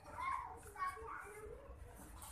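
Indistinct background chatter of voices, children's among them, over a low hum of room noise.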